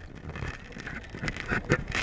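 Camera handling noise: rustling with several short knocks and clicks as the camera is picked up and moved by hand, growing louder toward the end. The motorcycle's engine is not running.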